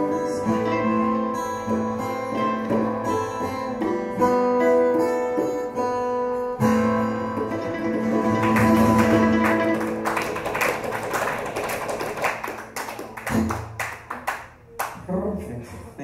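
Live acoustic band of guitars and mandolin playing, with long held melody notes over the strumming. The song winds down in a few separate strummed chords near the end.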